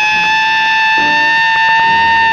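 A jazz horn holds one long, bright high note, sliding up a little as it starts and then held steady over a quiet band accompaniment.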